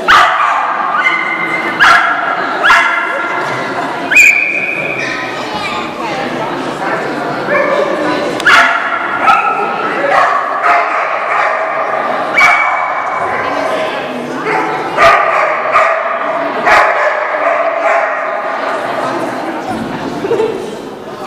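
A small dog yapping again and again in short, high-pitched barks, about one a second, as it runs an agility course with its handler.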